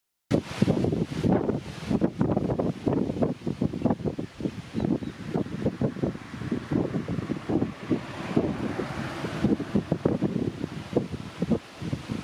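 Wind buffeting the microphone in loud, irregular gusts, a low rumbling noise that surges and drops every fraction of a second.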